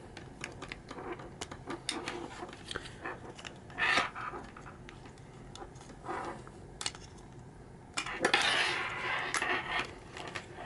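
Handling noise: small plastic clicks and taps as a charging cable's plug is worked into a plastic wall-plug phone holder, with brief rustles and a longer scraping rustle near the end.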